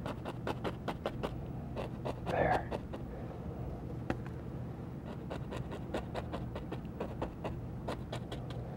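Fan brush loaded with oil paint tapping and scrubbing against the canvas: a quick, irregular run of soft taps and scratches, over a steady low hum.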